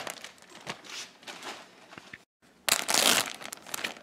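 Clear plastic bag crinkling as it is handled. The crinkling is fairly quiet at first, cuts out completely for a moment past halfway, then comes back in a louder burst near the end.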